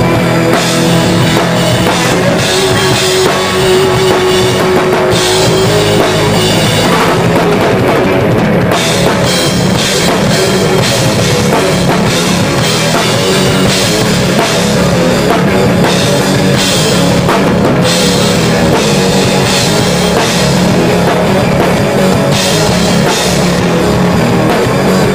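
A rock band playing live: a drum kit with kick drum and cymbals driving under electric guitar. The sound is loud and dense throughout.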